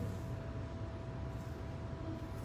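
Steady room noise: a low rumble with a faint, steady hum tone over it and no distinct events.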